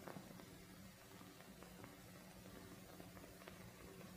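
Near silence: the faint steady hum and hiss of an old film soundtrack, with a few faint clicks.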